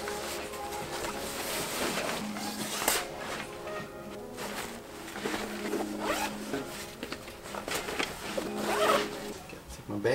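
Zipper of a nylon backpack being pulled along as a laptop is packed into it, over background music.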